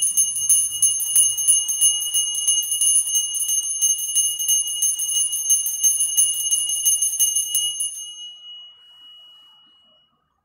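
Altar bells shaken rapidly in a continuous bright jingle for about eight seconds, then ringing out and fading. The ringing marks the elevation of the consecrated host.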